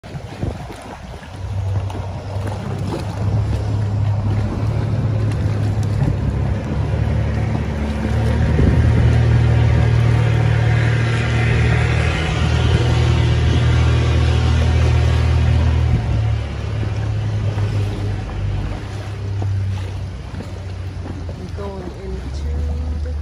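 A boat engine running unseen, a steady low drone that grows to its loudest about halfway through and eases off after about 16 seconds.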